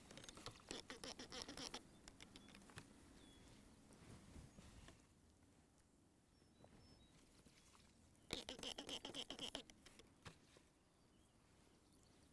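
Faint crackling and squishing of moist soil being kneaded and squeezed in the hand into a ball, in two spells: in the first two seconds, and again about eight seconds in.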